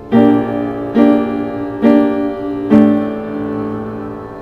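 Piano playing a slow, dark tune: four chords struck about a second apart, each left to ring and fade, the last one held to the end.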